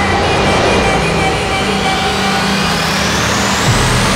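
Film-trailer sound design: a dense whooshing swell with a rising sweep that climbs steadily in pitch throughout, over music and a low steady drone that drops out near the end.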